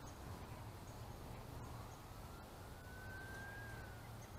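A faint, distant siren: one slow rising wail starting about halfway through, over a low steady rumble.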